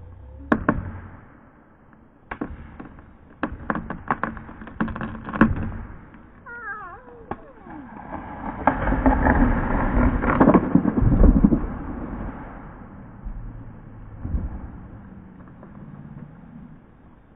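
Sharp knocks of axe blows driving a felling wedge into the cut of a western hemlock, then the hinge wood creaking with a few falling squeals as the tree tips. A long, loud crash follows as the trunk and its branches smash to the ground, dying away near the end.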